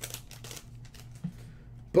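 Faint light clicks and rustling of trading cards and their plastic holders being handled, over a steady low hum.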